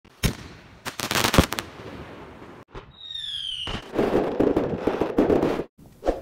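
Fireworks going off: a sharp bang near the start, a quick cluster of bangs about a second in, another bang, then a falling whistle around the middle. A dense run of crackling pops follows and cuts off suddenly just before the end.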